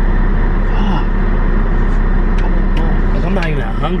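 Steady low rumble of a car idling, heard from inside the cabin. A faint voice comes in briefly near the end.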